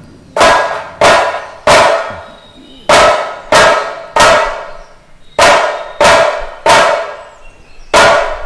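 A large drum struck hard in a steady pattern of three strikes, a short pause, then three again. Each strike rings briefly with a clear pitch.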